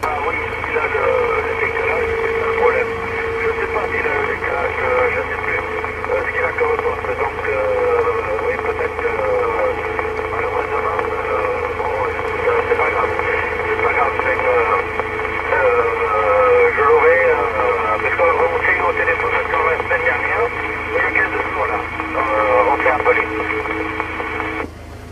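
Another station's voice received over single sideband on a President Lincoln II+ CB radio, coming out of its speaker thin and band-limited. Hiss and a few steady interference tones run underneath.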